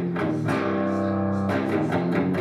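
Electric guitar in drop C tuning playing one-finger barre chords on the low strings: a few chords struck, one held ringing for about a second before the next.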